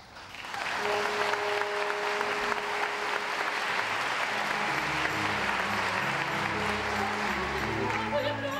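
Audience applauding in a theatre, starting just after the opening. Underneath, an orchestra comes in with a held note about a second in, and lower notes join about halfway through.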